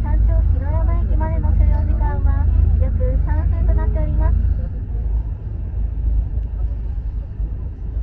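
Steady low rumble inside a ropeway gondola cabin as it travels along its cable, easing slightly about halfway through. A recorded onboard announcement voice speaks over it for the first half.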